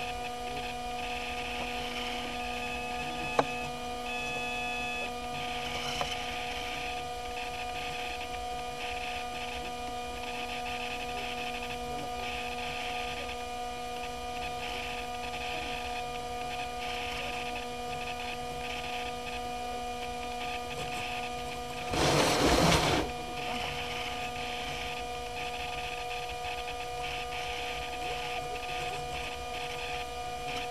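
Steady electrical hum and whine made of several fixed tones, with patches of hiss, from the onboard keychain camera's audio on the model jet. A sharp click a few seconds in, and a loud rush of noise lasting about a second about three-quarters of the way through.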